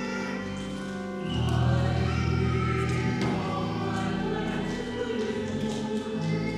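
A church choir singing a hymn with sustained accompaniment. The music swells about a second in, with deeper low notes joining.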